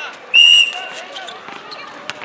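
A referee's whistle gives one short, loud blast about a third of a second in. Around it, a basketball bounces on a concrete court and players shout.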